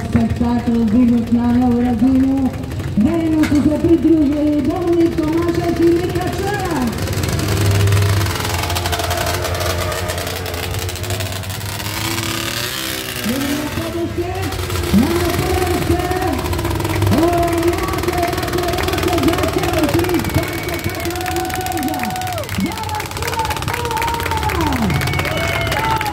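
Quad bike engine revving hard in repeated pulls during wheelie stunts. Each pull sweeps up quickly, holds at high revs for a few seconds and then drops off sharply when the throttle is released.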